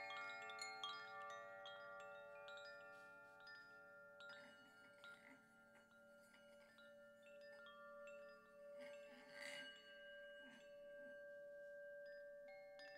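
Quiet chimes ringing: many clear metallic tones struck one after another and left to ring on together, with a brighter cluster of strikes about nine and a half seconds in.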